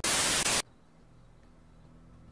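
A loud burst of TV static hiss, about half a second long, that cuts off suddenly; after it only a faint low hum remains.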